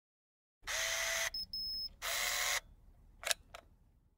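Camera sound effects: two half-second bursts of lens-motor whirring with a high beep between them, then two quick shutter-like clicks about three seconds in.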